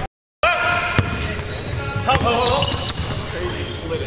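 Basketball bouncing on a hardwood gym floor, a few sharp bounces about a second apart, with players' voices in between; the sound cuts out briefly at the very start.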